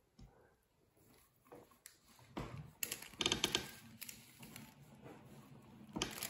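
Small plastic decorations being poured from a bag into a clear plastic dome mould: a quick rattle of light clicks about three seconds in, then scattered ticks.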